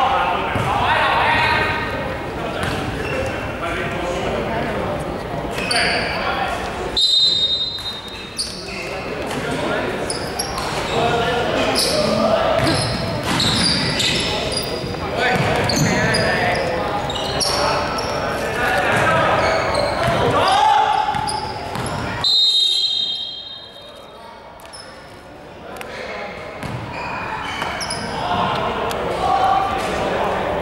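Basketball game in a large sports hall: a basketball bouncing on the hardwood court amid players' voices, with the hall's echo.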